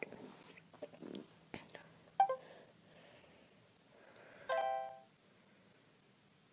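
Faint handling clicks, a short electronic blip about two seconds in, and a half-second electronic chime of several steady tones about four and a half seconds in: the alert tones of smartphone voice-assistant apps processing a spoken request.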